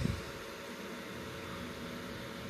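Gas furnace inducer draft motor running with a steady whoosh of air during start-up. It runs now that the pressure switch is no longer closed before the call for heat.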